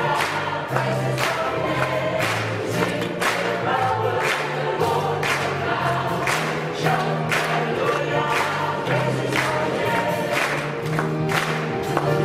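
Choir singing a sacred song, with the low voices moving in steady notes beneath the melody.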